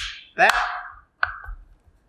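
Battery pack being set into the base of an electric spinning wheel: a sharp click at the start, then a sharp knock a little over a second in and a smaller one just after, over the spoken word "that".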